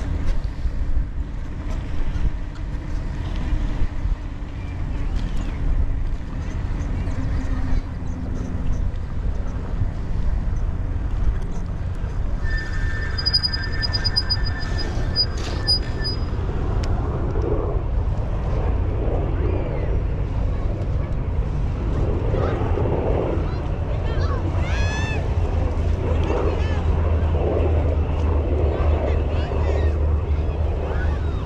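Steady low rumble of wind on a bicycle-mounted camera's microphone while riding. A brief high steady tone sounds about halfway through, and faint voices come in during the second half.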